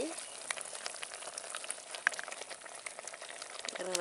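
Thick tamarind curry (vatha kuzhambu) bubbling in a clay pot: a soft sizzle with many small pops scattered throughout.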